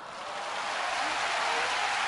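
A large audience applauding. The applause swells over the first second, then holds steady.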